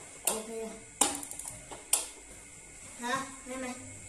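Gas hob control knob clicking as it is turned, three sharp clicks about a second apart, the middle one followed by half a second of rapid ticking from the battery-powered pulse igniter. The igniter is sparking again now that the rat-chewed switch wire has been rejoined.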